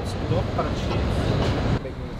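A steady rumbling noise with a hiss above it, cutting off sharply near the end.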